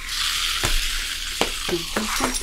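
Blizzard wind hissing steadily on a TV drama's soundtrack, with three short sharp clicks in the second half.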